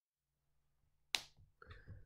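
Dead silence, then a single sharp click a little over a second in, followed by a few faint soft sounds.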